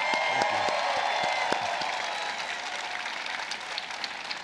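Crowd applauding, made up of many separate handclaps, loudest at the start and slowly dying away.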